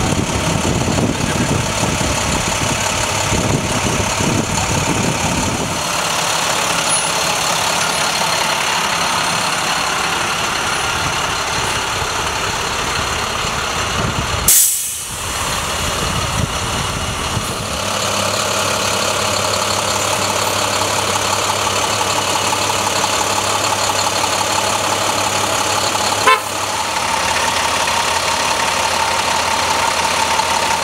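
School bus engine running steadily, with a constant hum. Two sharp clicks come about halfway through and near the end.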